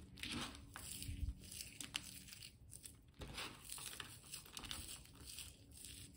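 Crisp, deep-fried golden onions being crushed by hand, giving an irregular run of dry crackling crunches. The onions have been fried well and cooled, which is what makes them crisp.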